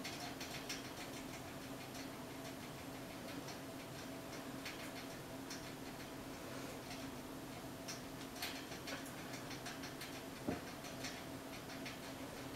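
Faint, irregular light ticks and scratches from an eyebrow pencil being worked into the brows, over a steady low room hum, with one soft knock about ten and a half seconds in.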